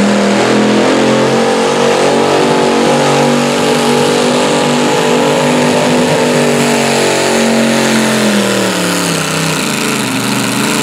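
Antique pulling tractor's V8 engine running hard at high revs under load as it drags a weight-transfer sled. The pitch holds steady, then drops about eight seconds in as the load builds, and starts to rise again at the end.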